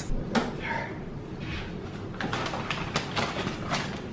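A few faint clicks and knocks in a quiet room.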